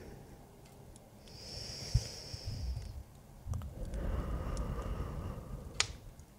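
A woman breathing close to the microphone: a long hissy breath in a little over a second in, then a fuller, slightly voiced breath out from about four seconds, with soft low thumps underneath, a few faint clicks and one sharp click near the end.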